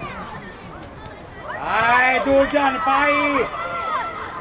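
A voice shouting loudly on a football pitch, one long call with drawn-out held notes from about a second and a half in to near the end, over fainter voices.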